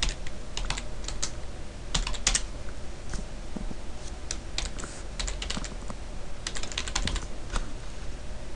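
Computer keyboard typing: keystrokes come in short irregular bursts with pauses between them, as a line of text is typed out.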